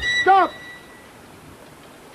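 A man's voice calls out once, drawn out, near the start, over the last held high note of background music, which stops about a second in. After that there is only a low, steady hiss.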